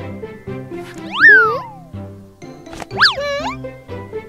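Cartoon boing sound effects for bounces on a bouncy castle, twice: a quick springy tone that shoots up in pitch and slides back down, about a second in and again about three seconds in. Upbeat children's music runs under them.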